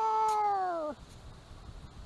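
A single drawn-out animal call, held steady for about a second and then dropping in pitch as it ends.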